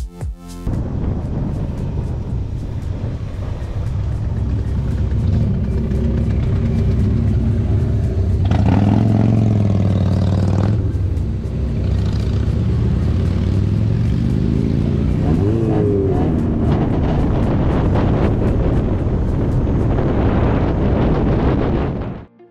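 Onboard riding noise of a Verge TS electric motorcycle: steady wind and tyre rush on the helmet-mounted camera's microphone, with a whine that rises and falls about nine seconds in and again around sixteen seconds.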